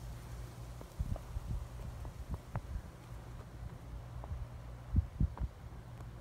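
Footsteps in fresh snow, heard as soft, irregular low thumps from a handheld phone's microphone, loudest in a quick cluster near the end, over a steady low hum.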